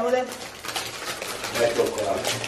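Plastic snack wrappers crinkling and rustling in irregular crackles as they are handled and torn open.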